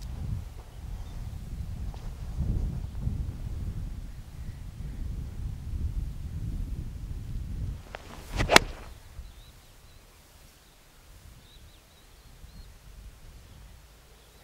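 A golf iron strikes a ball off fairway turf: one sharp crack a little past halfway. Before it there is a low rumble of wind on the microphone that fades after the shot.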